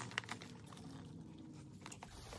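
Faint handling noise: bubble wrap crinkling and a few light clicks as a bamboo shakuhachi is picked up and turned in the hands.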